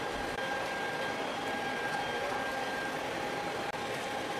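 Steady background noise of a large exhibition hall: an even hiss-like hum with a faint steady high tone running through it.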